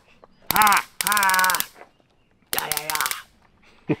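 A man laughing hard in three loud bursts, the last about two and a half seconds in.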